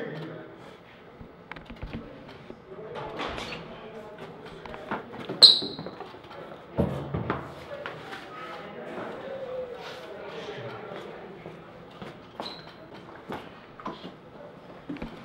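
Faint, indistinct murmured voices in a quiet room, with scattered small knocks; a short, sharp high squeak about five and a half seconds in is the loudest sound, followed by a thump just under a second later.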